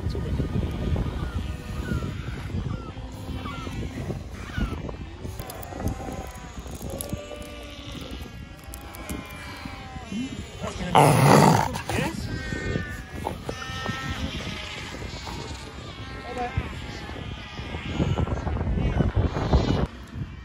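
Cape fur seal pup calling while it is restrained on the sand, with repeated short calls rising and falling in pitch and one loud, harsh call about eleven seconds in.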